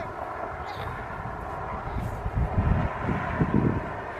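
Wind buffeting the camera microphone in irregular gusts, over a faint steady drone.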